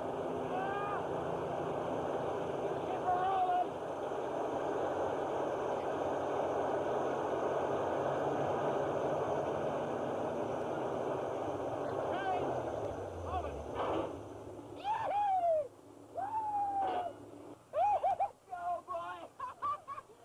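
A motorboat engine running steadily, then slowing and dropping away about two-thirds of the way through. After it fades come a series of short swooping calls.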